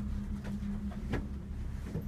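Steady low hum and rumble inside an enclosed gondola cabin riding along its cable, with two faint clicks about half a second and a second in.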